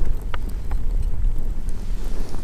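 Wind buffeting the microphone, a steady low rumble, with a couple of faint clicks early on.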